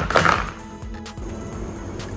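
Background music with steady held notes. At the start there is a brief clatter as plastic toy dinosaur figures are dropped into a plastic tub.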